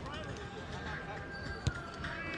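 A football kicked once, a sharp thud about a second and a half in, over distant shouts from the pitch.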